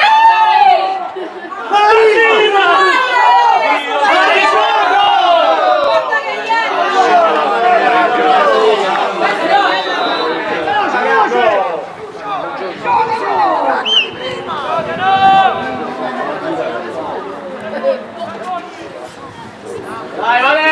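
Several voices shouting and chattering on and around a football pitch: players and spectators calling out over one another. A short high whistle-like note sounds about fourteen seconds in.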